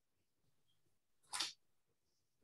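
A single short, sharp burst of noise about a second and a half in, lasting about a quarter second, over faint room tone.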